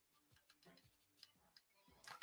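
Near silence, broken only by a few very faint ticks.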